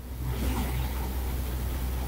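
A steady low hum with a faint rumbling noise over it, holding level with no distinct events.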